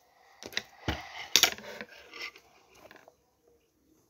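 Scissors snipping paper and paper being handled close to the microphone: a quick run of sharp clicks and rustles that dies away after about two seconds.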